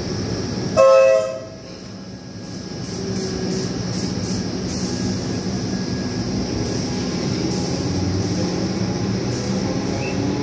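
Melbourne Metro electric suburban train giving a short horn toot about a second in, then pulling away with running noise that builds and a faint rising motor whine.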